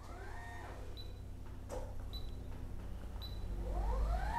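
Permobil M3 power wheelchair's elevating leg-rest actuator motor: a short whine that rises and falls at the start, then near the end a whine that climbs in pitch and holds steady as the leg rests move. A few small clicks from the switch-box buttons come in between.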